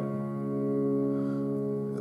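A D-flat chord held on a digital piano with both hands, ringing steadily with no new notes struck.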